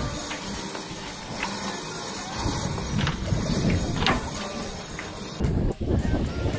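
A spinnaker being hoisted on a racing yacht: halyard rope running up the mast in a few short zips over a steady hiss, with louder flapping of the unfilled sail cloth near the end.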